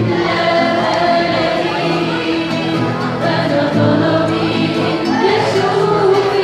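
An Arabic Christian hymn sung by a small group of young voices, accompanied by piano and guitar.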